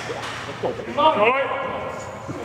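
Man shouting encouragement, "Come on!", about a second in.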